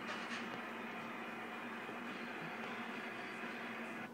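Steady faint hiss with a weak low hum underneath, unchanging throughout, from the radio and amplifier setup while the amplifier is keyed into the wattmeter.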